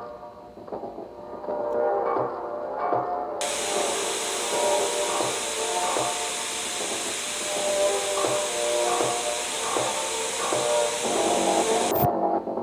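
Music of short, repeating pitched figures. About three seconds in, a loud, steady hiss of television static comes in over it and cuts off abruptly at the end.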